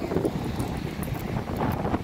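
Wind buffeting the microphone: a rough low rumble that rises and falls.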